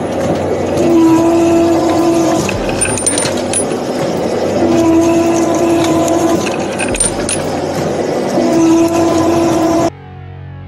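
Metalworking roller machine running steadily, with a humming tone that swells for a second or two in a repeating cycle about every four seconds, and scattered metallic clicks. It cuts off suddenly at the end.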